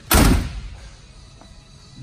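The driver's door of a 1968 Chevrolet Camaro being shut, with a single solid slam just after the start that fades over about half a second.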